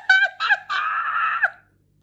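A woman's high-pitched giggle running into one held squeal of laughter, which stops about a second and a half in.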